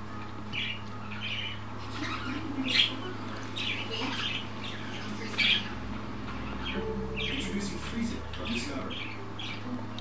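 A pet parrot giving a string of short squawks and chirps, loudest about three and five and a half seconds in, over a steady low hum.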